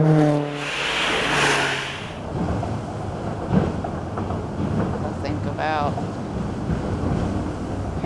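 Road traffic on a concrete highway bridge: a steady drone for the first second, a car passing with a rush of tyre noise about a second in, then a continuous low rumbling of cars with small knocks.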